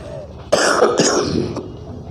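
A man clearing his throat with a cough close into a microphone: a sudden harsh burst about half a second in, with a second push near the one-second mark, fading over about a second.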